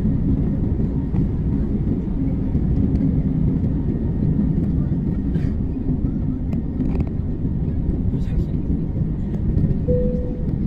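Jet airliner's engines at takeoff power, heard inside the cabin as a steady, deep rumble through the takeoff roll and liftoff.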